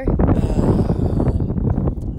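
Wind buffeting a handheld phone's microphone, a steady low rumble, with a person's sigh about a second in.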